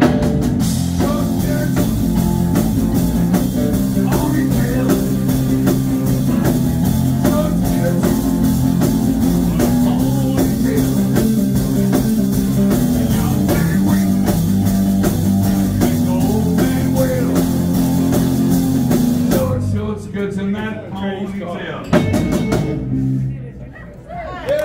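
Live rock band of electric guitar, bass and drum kit with cymbals playing an instrumental passage, then breaking off abruptly about 20 seconds in, leaving a few stray guitar and bass notes before it falls quieter near the end. The song is abandoned partway through.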